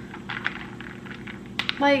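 A glass straw stirring ice balls in an iced latte in a glass mason jar, giving a few light, scattered clinks.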